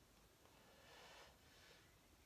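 A person's faint breath: one soft, drawn-out breath starting about half a second in and fading after about a second, over near silence.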